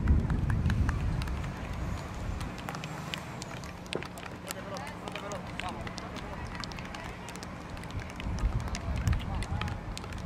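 Field-hockey play heard from the pitch side: many short sharp clacks of hockey sticks hitting the ball, with players' voices calling out faintly. A low rumble is loudest at the start, fades, and swells again near the end.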